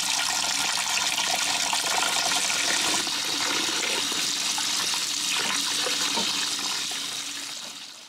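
Running tap water splashing into a pot of mugwort-dyed fabric as it is rinsed through after dyeing. A steady rush of water that fades away near the end.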